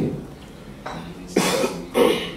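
A person coughing close to a desk microphone: a loud cough about a second and a half in, and another near the end.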